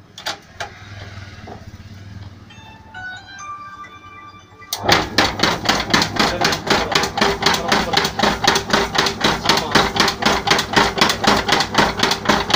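Aimil sieve shaker with a stack of test sieves: a few clicks as the lid clamp is tightened and a short series of electronic tones, then about five seconds in the shaker starts and rattles the sieves in a fast, even rhythm of about five to six strokes a second, sifting a manufactured sand sample.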